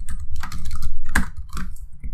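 Computer keyboard typing: a quick, irregular run of keystrokes.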